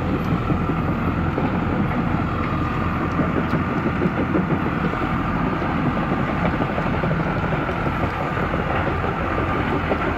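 Small tracked crawler carrier's engine running steadily while it drives, its tracks clattering continuously, with a faint steady whine above.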